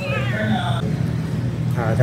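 Domestic cat meowing: one falling call at the start, and another call starting near the end.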